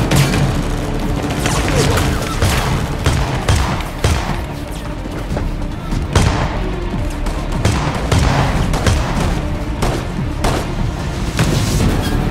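Gunfight sound: repeated gunshots, some in quick runs, over a steady dramatic music score.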